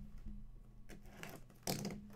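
Box cutter slitting the plastic shrink-wrap on a cardboard trading-card box, with faint scratches about a second in and a louder scrape of plastic near the end.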